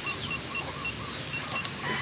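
Quiet outdoor ambience with a string of short, high-pitched chirps repeating irregularly, about two or three a second.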